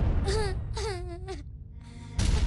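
A young girl crying: two drawn-out wailing sobs in the first second and a half, the second longer than the first, over a low background rumble.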